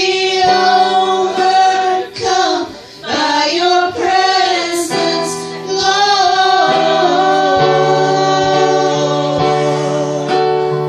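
Female voices singing a church song together to electronic keyboard accompaniment, the keyboard holding a sustained chord in the second half.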